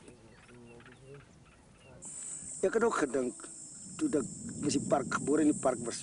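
A steady, high-pitched chirring of insects starts suddenly about two seconds in, under a man speaking in bursts; the first two seconds are quiet.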